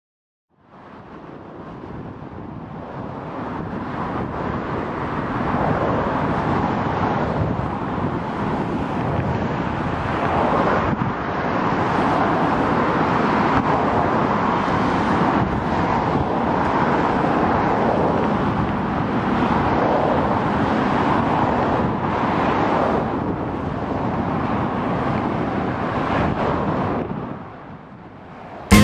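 Steady road traffic noise, a continuous rush of passing cars. It fades in about a second in, builds over the first few seconds and drops away just before the music starts.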